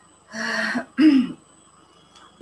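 A woman clearing her throat, two short sounds about half a second apart, the second with a falling voiced tone.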